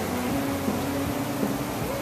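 Acoustic guitar string ringing while being tuned: one sustained note that shifts slightly in pitch a few times.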